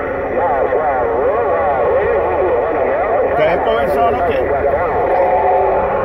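Received radio voices from a President Lincoln II+ transceiver's speaker: several distant stations talking over one another at once, garbled and unintelligible, with the thin, narrow-band sound of a radio signal.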